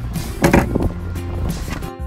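Background music, with a short loud clatter about half a second in as a travel trailer's exterior storage compartment hatch is swung open and the bay is rummaged through.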